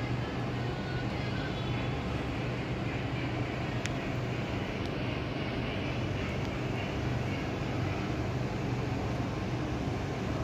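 A steady low mechanical hum with a rushing noise behind it, and one brief click about four seconds in.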